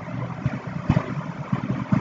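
Steady background hiss of a desk microphone with a few soft low thumps, the loudest about a second in.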